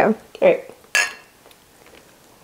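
A spoon clinks once against a ceramic coffee mug about a second in, with a short ringing tone.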